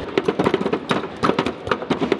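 A mallet hammering the pop-up moles of a Whac-A-Mole arcade game: rapid, irregular knocks, several hits a second.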